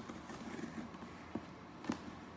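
A knife cutting into the packing tape on a cardboard box, with cardboard scraping and two sharp clicks in the second half.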